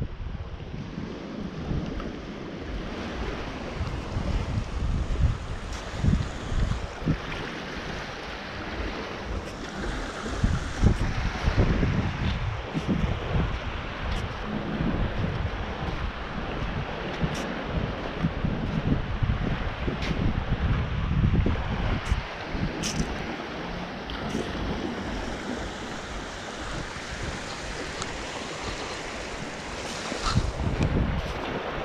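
Gusty wind buffeting the camera microphone, with the steady wash of surf on the beach underneath.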